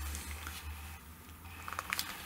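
A few faint clicks from a hand handling a Canon AS-6 waterproof film camera near the end, over a steady low hum.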